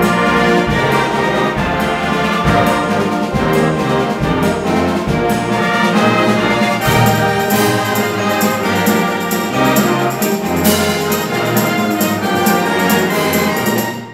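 A wind band playing loudly, brass to the fore, the full ensemble coming in together all at once at the start, with percussion strokes running through.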